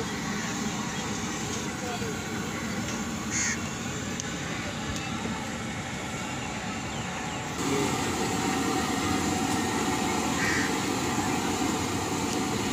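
Outdoor background noise: a steady rushing haze with faint distant voices and a couple of short high chirps. The sound changes abruptly about two-thirds of the way through, at an edit.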